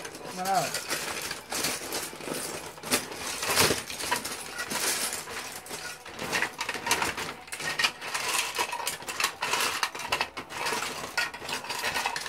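Loose plastic Lego bricks clattering and clicking as hands rummage through a bag full of them: a dense, irregular stream of small sharp clicks.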